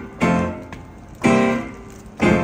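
Upright piano: two chords struck about a second apart, each left to ring and fade.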